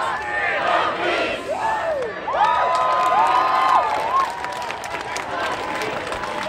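Crowd of protesters shouting and cheering, with several long, high cries held for about a second each near the middle and scattered claps towards the end.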